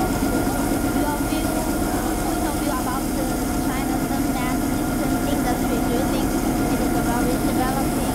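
Small driverless street sweeper running with a steady mechanical hum, its side brushes lowered onto the road.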